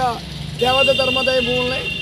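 A man speaking Telugu, after a brief pause at the start. A steady high tone runs under his voice for about a second and a half from about half a second in, over a steady low hum.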